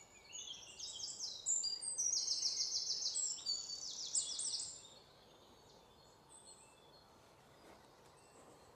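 Songbird singing: a run of rapid, high, repeated trilled notes lasting about four and a half seconds, then only faint woodland background.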